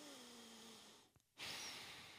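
A man's breathing close to the microphone: a soft breathy exhale carrying a faint falling hum, then after a short gap a sudden hissy breath about a second and a half in that slowly fades.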